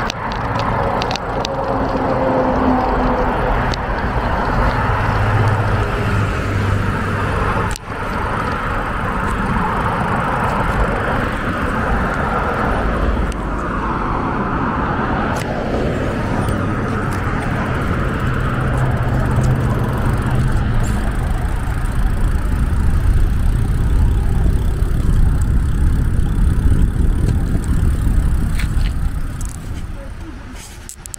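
Road traffic on a busy multi-lane street: cars and trucks passing close by in a steady, loud wash of tyre and engine noise, with one vehicle swelling past about halfway through.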